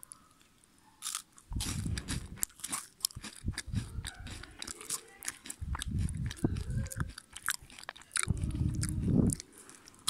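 Crisp cream wafers being bitten and chewed close to the microphone: dry crackling crunches over low chewing thuds, starting about a second and a half in and running in spells to the end.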